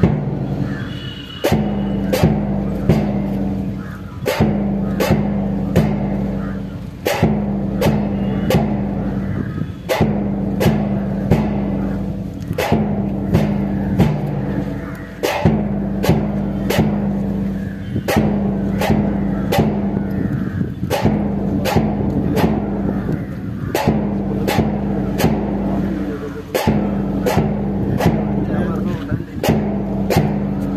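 March music with a steady drum beat, about two beats a second, over a repeating low droning tone that keeps time with the marching cadets.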